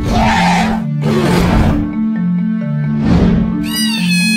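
Cartoon sound effects over background music with a steady stepping bass line: three rough, noisy bursts in the first three and a half seconds, then near the end a cartoon dragon's high screeching roar that falls in pitch.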